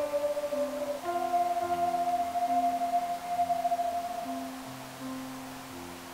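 A small ensemble of hand-held wind instruments playing the closing phrase of a slow melody in clear, almost pure tones over lower sustained parts. The tune ends on a long held high note that fades away, and the low parts stop just before the end.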